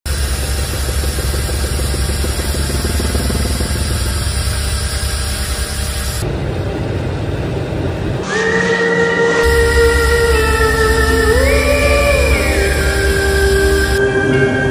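Steady drone of the LC-130 Hercules's four turboprop engines, heard from inside the aircraft. About eight seconds in, music with long held tones that slide up and down in pitch comes in over it.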